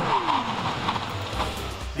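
Honda Civic Si's turbocharged 1.5-litre four-cylinder engine note falling steadily as the car comes in under braking, followed by steady road and tyre noise, over background music with a low beat.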